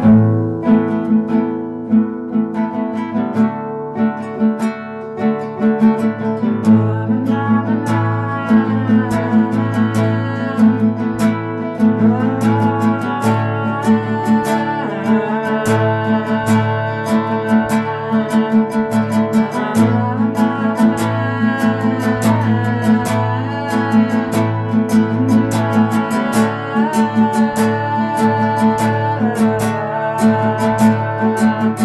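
Music led by a strummed acoustic guitar, playing steadily in an even rhythm and starting abruptly.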